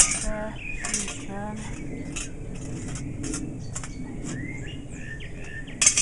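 Small birds chirping in the background, with a few short metallic clinks and taps from a metal canteen cup and stove being handled. The loudest tap comes near the end.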